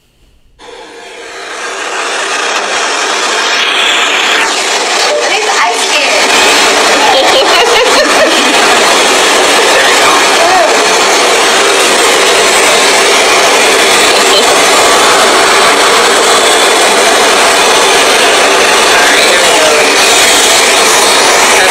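A loud, steady hiss-like noise starts abruptly just under a second in and swells over the next few seconds, with a faint voice buried beneath it.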